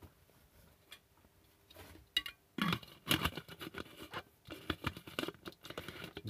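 Diffuser globe of a solar garden light being fitted and screwed onto its threaded base. A few faint clicks, then, from about two and a half seconds in, scratchy scraping and rattling of the globe turning on the thread.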